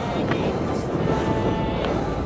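Skateboard wheels rolling on pavement, with a couple of short clicks, under a song's music.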